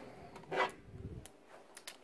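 Faint handling noise of a phone camera being moved, with a soft rustle about half a second in and a few light, scattered clicks in the second half.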